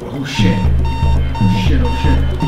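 Electronic film score with a pulsing bass, joined about half a second in by a repeating electronic alert beep, about two a second, the computer error warning of a failing system start-up.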